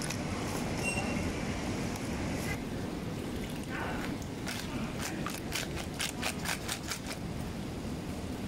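Live sea clams clattering in a perforated plastic scoop: a quick run of about a dozen sharp rattling clicks in the second half. Under it is a steady low background rumble.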